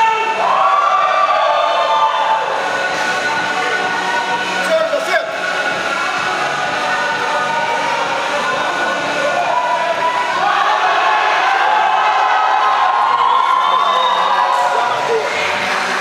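A crowd of spectators cheering and shouting, many voices at once, with music in the mix.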